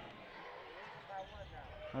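Faint arena ambience of live basketball play: a low crowd murmur with the ball being dribbled on the hardwood court.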